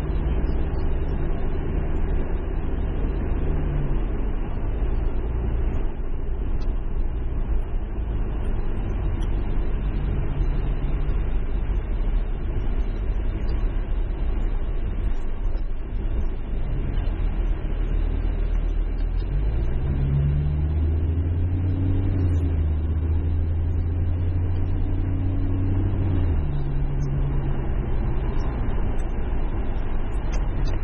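Car engine and road noise heard from inside the cabin while driving slowly. The engine note drops about four seconds in, rises as the car picks up speed around twenty seconds in, and falls again about six seconds later.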